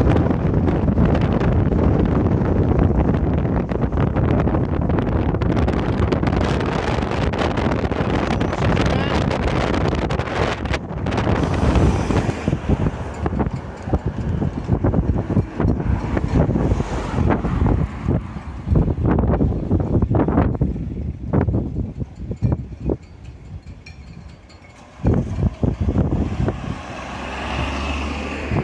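Strong wind buffeting the phone's microphone, a heavy rumbling rush mixed with passing car traffic. The buffeting is steady for about the first twelve seconds, then comes in broken gusts, easing briefly a few seconds before the end.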